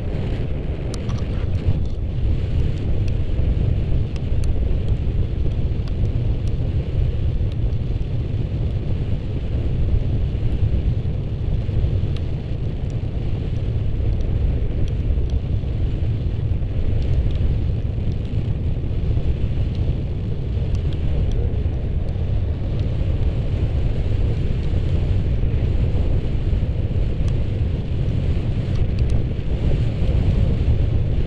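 Wind buffeting the camera microphone during a tandem paraglider flight: a steady, loud low rumble.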